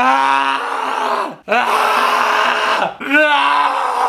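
A young man's loud anguished groans and screams, three long cries in a row, the middle one hoarse and rough: a cry of frustration at getting an answer wrong.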